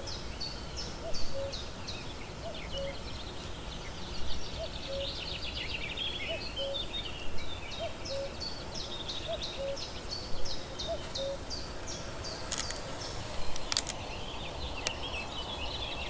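Small birds chirping in the background, a steady run of short high chirps several times a second over a steady hiss, with a fainter lower call repeating about once a second. A few sharp clicks come near the end.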